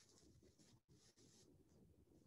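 Near silence: faint room tone with faint scratchy rustling in two short stretches, the first ending just before a second in.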